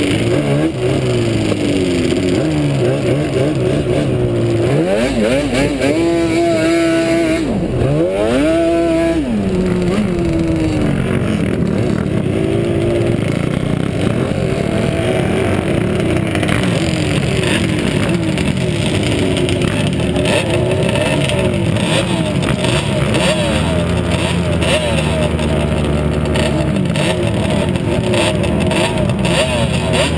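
Sport quad's two-stroke engine heard up close while riding, the pitch repeatedly rising under throttle and dropping back as the rider shifts and lets off, strongest climbs about six to nine seconds in.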